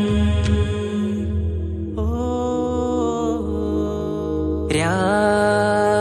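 Malayalam Mappila devotional (Nabidina) song: a singer holds long sustained vowel notes over a steady low bass accompaniment. A new held note comes in about two seconds in, and another slides up into place near the end.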